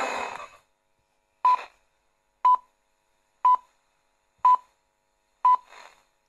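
Radio Rossii's hourly time signal played through a portable radio's speaker: five short pips near 1 kHz, one each second. They count down to the top of the hour.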